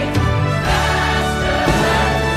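Background music: an instrumental passage of a song, sustained chords changing twice.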